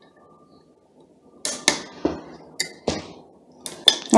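A few sharp metallic clicks and short scrapes as a socket-type screwdriver turns the long through-bolts out of a washing-machine motor's housing. They start about a second and a half in and come at uneven intervals.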